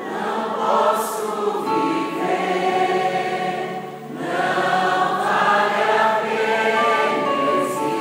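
Live gospel worship song: a woman singing on a microphone with a choir of voices and music behind her, in held, sustained phrases, with a short break between phrases about four seconds in.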